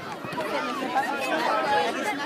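Several voices chattering and calling out at once, overlapping so that no words stand out: sideline spectators and young players at a children's soccer game.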